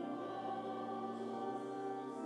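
Church hymn music: slow, held chords with a choir-like sound.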